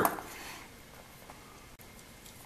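Quiet room tone with a couple of faint ticks as a small wooden drive hub is handled and turned over in the hands.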